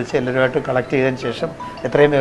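Speech only: a man talking in a low voice.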